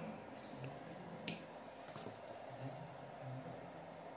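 A single sharp click about a second in, with a fainter click a little later, against quiet room tone: the breadboard circuit's supply being switched on.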